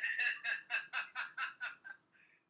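A woman laughing in a quick staccato run of about a dozen short pulses, about six a second, fading toward the end.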